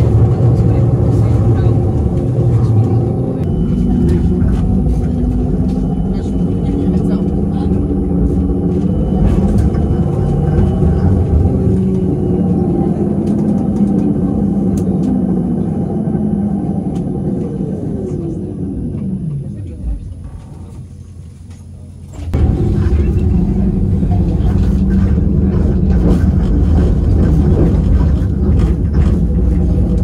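Electric tram running, heard from inside the car: a steady rumble of the wheels with the motors' hum. About halfway through, the motor tone falls steadily in pitch as the tram slows, and it goes quieter for a couple of seconds before a loud rumble starts again suddenly.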